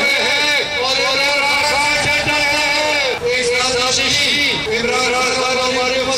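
A man's raised, high-pitched voice speaking into a microphone, going almost without pause.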